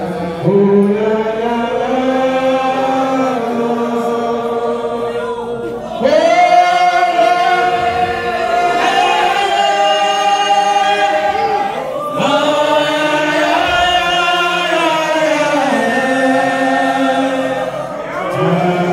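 A congregation singing together in long, drawn-out phrases, each lasting about six seconds before a fresh phrase begins, at a steady, loud level.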